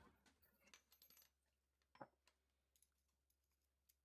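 Near silence, with a few faint small clicks about a second in and one more tick near the middle: small parts being handled.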